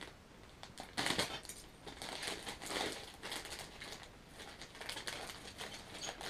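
A plastic bag of model kit sprues crinkling and rustling as it is handled and drawn out of a cardboard kit box, in irregular bursts, the loudest about a second in.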